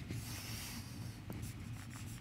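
Marker pen scratching on a whiteboard as lines are drawn, faint, over a low steady room hum.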